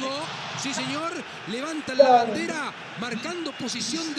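Speech: voices in short rising-and-falling phrases amid a goal celebration, with a brief louder shout about two seconds in.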